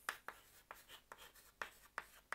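Chalk writing on a chalkboard: a run of short, faint taps and scratches as the letters of a word go down.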